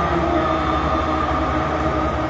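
A man's voice through a microphone and loudspeakers, holding a long sung note with a steady low hum beneath it.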